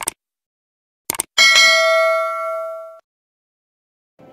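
Sound effects for a subscribe-button animation: a short click, a quick double click about a second later, then a notification-bell ding that rings for about a second and a half and cuts off suddenly.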